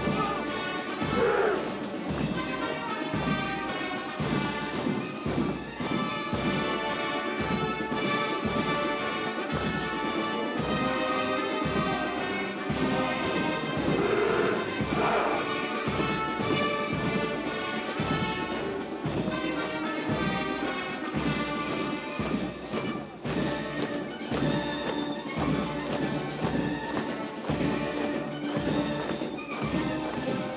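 Military brass band playing a march, trumpets and tuba over a steady drum beat of about two beats a second.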